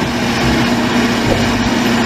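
Remote-control toy crawler bulldozer pushing sand, its motor running with a steady drone and a constant low hum.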